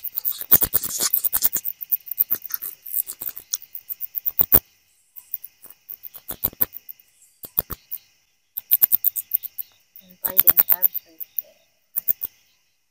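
A bat held in a gloved hand chattering: quick trains of sharp clicks and squeaks in several short bursts about a second apart. Insects trill steadily underneath.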